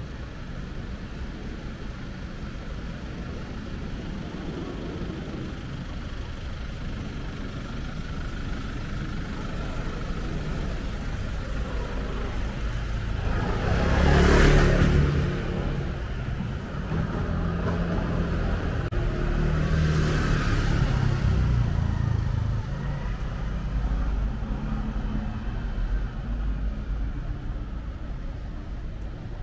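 Motor vehicles passing on a narrow street: a low engine rumble builds up to a motorcycle passing close by about halfway through, with a brief rush of noise, and another vehicle passes about six seconds later.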